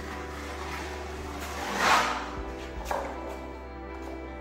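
Background music with sustained notes, over which a drywall trowel scrapes through joint compound, loudest in one swish about two seconds in and again more briefly near three seconds.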